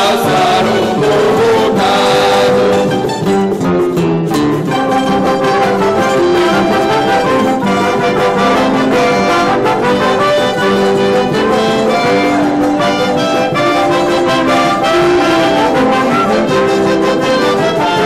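Live instrumental interlude of a Terceira carnival bailinho band: trumpets, trombones and a tuba with clarinets and saxophone play the tune together with acoustic guitars, without singing.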